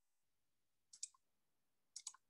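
Two quick clusters of sharp clicks about a second apart against near silence, made by someone working at a computer during the video call.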